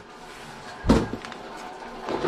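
A single sharp knock or thump about a second in, followed by a lighter tap, from something being handled or set down; otherwise only a quiet background.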